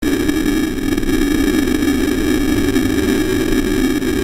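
Amplified live rock band heard as a loud, steady, distorted wash of sound, cutting in suddenly.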